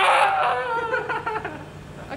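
A person screaming in fright on spotting a rat: one long, high cry that falls in pitch and fades away over about a second and a half.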